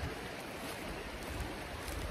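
Fast-flowing rocky brook running: a steady rush of water over stones.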